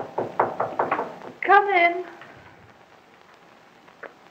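Rapid knocking on a door, several quick raps a second for about the first second. A woman's voice then calls out once, drawn out, about a second and a half in.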